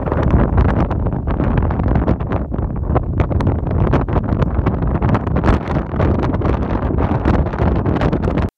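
Strong wind buffeting the microphone: a loud, continuous low rumble with constant irregular flutters.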